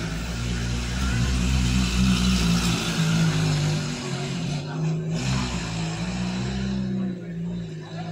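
A motor vehicle's engine running steadily with road noise.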